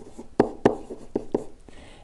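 Stylus writing on a pen-input surface: a few short, sharp taps and strokes as handwritten digital ink is put down.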